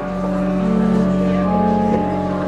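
Pipe organ holding sustained chords over a low pedal bass note, with the upper notes changing partway through and again near the end.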